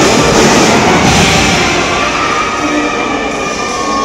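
Marching band brass section holding a loud, sustained chord. The low drums thin out through the second half, then the full band comes back in loudly right at the end.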